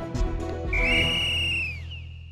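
A whistle blown in a single blast of about a second, which drops in pitch as it ends. Background music plays underneath.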